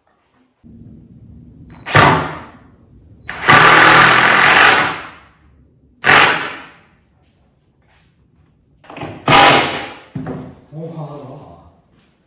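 Cordless drill driving screws into pine boards of a door frame: a few short bursts and one longer run of about a second and a half.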